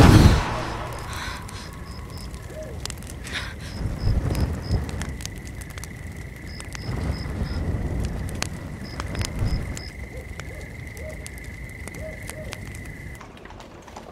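Night ambience of a campfire: the fire crackling with scattered sharp pops, and night insects chirping in short runs of four or five every few seconds. Over it a thin steady high tone holds for most of the time, with a low rumble swelling and fading twice.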